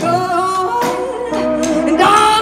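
Live amplified blues-rock band: a sung vocal line over lap steel slide guitar and drums.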